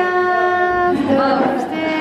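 A singing voice holding long, steady notes, a sung melody rather than speech.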